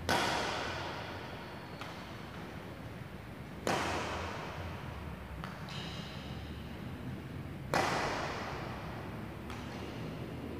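Badminton racket striking a shuttlecock on the serve three times, about four seconds apart, each hit sharp and echoing through the hall. Fainter taps fall between the hits.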